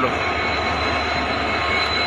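Indian Railways WDP4D diesel locomotive, with its EMD two-stroke V16 engine, running past with a steady low engine drone over an even rumble.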